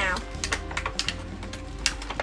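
Quick, irregular small clicks and taps of plastic doll packaging and accessories being handled.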